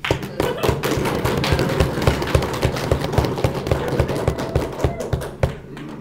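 Audience applauding by knocking on their desks: a rapid, loud run of thuds that dies away about five and a half seconds in.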